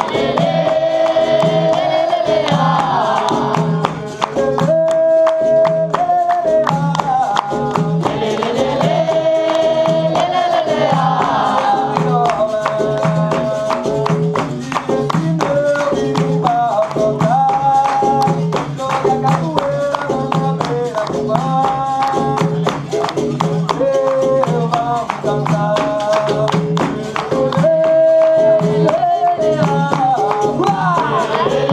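Capoeira roda music: singing over berimbau, pandeiro and atabaque, with a steady low drum beat, constant percussion and hand clapping.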